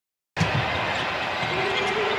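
Silence for the first third of a second, then the steady arena background of a televised basketball game, with a ball being dribbled on the hardwood court.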